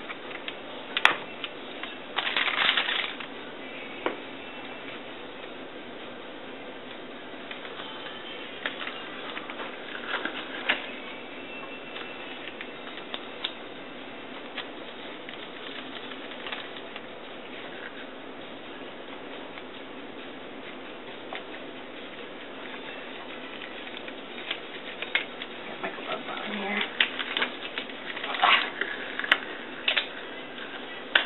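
Sterile paper wrap and packaging rustling and crinkling as a sterile pack is opened and laid out by hand, with scattered light taps and clicks over a steady hiss. The handling is busiest a couple of seconds in, around ten seconds in, and again near the end.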